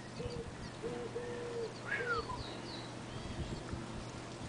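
Birds calling: a series of short, low, level notes through the first half, with a few high chirps and one falling whistle around the middle, over a faint steady hum.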